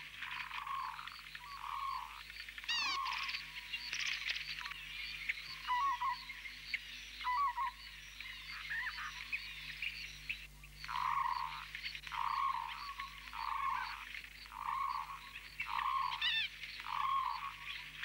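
A frog calling over and over, a short croak roughly once a second with a brief pause midway, and a few bird chirps now and then.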